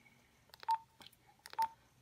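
Keypad of a Motorola XPR 7550 digital two-way radio being typed on: button clicks and two short key beeps, about a second apart, as a text message is entered letter by letter.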